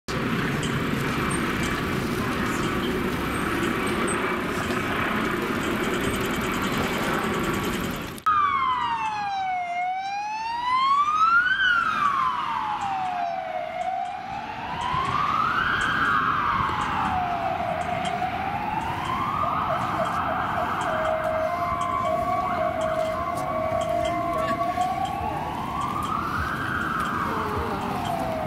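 A helicopter passes overhead with a steady noisy rotor sound. About eight seconds in it is cut off sharply by an ambulance siren wailing, rising and falling slowly about every four seconds.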